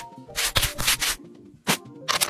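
Cloth wiping wet eyeglasses, three short rubbing strokes.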